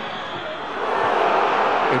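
Stadium crowd noise swelling into a loud, sustained roar about a second in, as a penalty kick in a football shootout goes into the net.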